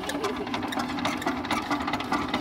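The single-cylinder diesel engine of a two-wheel power tiller being hand-cranked, giving a rapid, even mechanical clatter.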